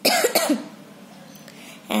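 A woman coughing twice in quick succession right at the start, the pair lasting about half a second.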